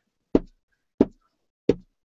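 Felt alcohol-ink applicator, a wooden block with a knob handle, dabbed down three times onto a small metal flower on the work surface, making three dull knocks about two-thirds of a second apart as it lays more ink on top.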